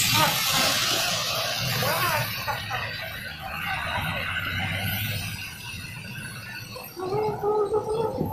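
Busy street ambience: a steady hum of passing traffic with people's voices talking. A louder voice or music comes in near the end.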